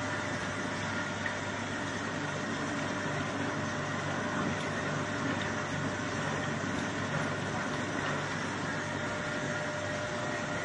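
A soybean washing machine for tempe running steadily: a constant machine noise with a few steady tones.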